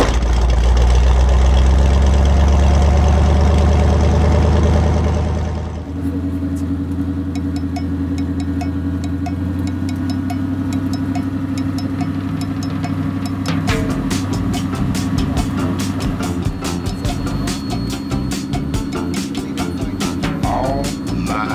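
Deep, loud rumble of the Zenith CH801's 347 all-aluminum Ford V8 for about the first six seconds. It then settles into steadier engine tones, with music on a steady beat laid over it. The beat becomes sharper about two-thirds of the way through.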